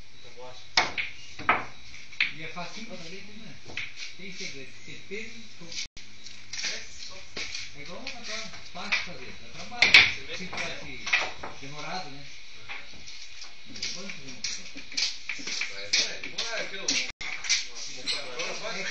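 Pool balls clacking on a sinuca table: sharp clicks of cue tip and ball-on-ball hits, a quick run of them about a second in, the loudest around the middle, and more near the end. Faint voices and a steady hiss lie under them.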